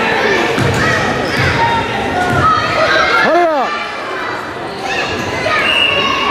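A basketball bouncing three times on a hardwood gym floor under constant spectator chatter in a large hall. About three seconds in, one voice gives a short call that rises and falls.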